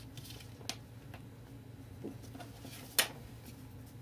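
Small clicks and taps of craft materials being handled on a work table, with one sharp click about three seconds in, over a faint steady low hum.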